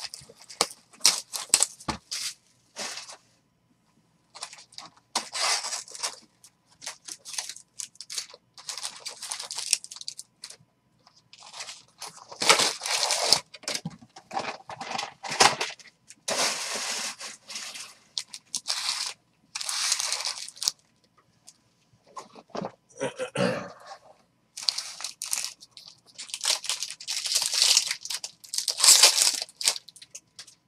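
Foil wrappers of Topps baseball card packs being torn open and crumpled, in repeated bursts of crinkling and tearing separated by short pauses.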